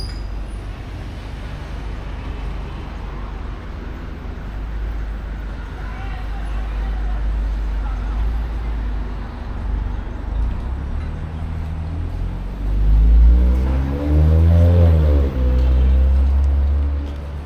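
City street traffic with a steady low rumble and faint passing voices. Over the last few seconds a motor vehicle's engine is close and loud, its pitch rising and then falling as it passes.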